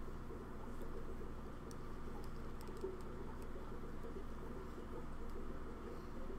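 Steady low hum of room equipment, with a few faint scattered clicks.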